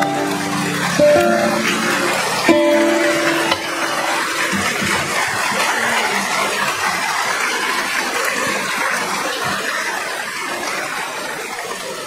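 The last plucked notes of a harp ensemble ring out and die away within the first few seconds, while audience applause rises over them. The applause carries on and slowly fades.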